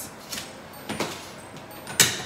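Stiff sliding window being forced open along its track: a couple of faint knocks, then a sharp, louder knock at the end.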